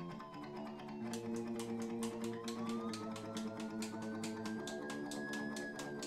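Music: held chords with a fast, steady ticking beat that comes in about a second in, and a single tone over them that slowly rises and then falls.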